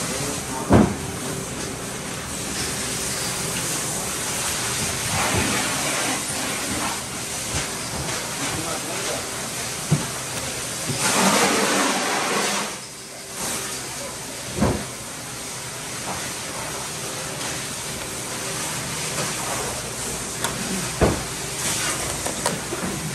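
Steady background hiss and hum, with a few single knocks as a whole bluefin tuna and a filleting knife are handled on a cutting board. A louder hiss lasts about two seconds near the middle.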